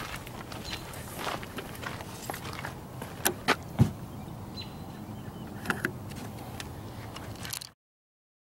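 Scattered light knocks and clicks of handling and movement aboard a boat, with one heavier thud about four seconds in, over a steady hiss. The sound cuts off abruptly just before the end.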